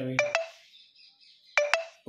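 Two short, ringing double clinks about a second and a half apart, the first just as a man's voice trails off.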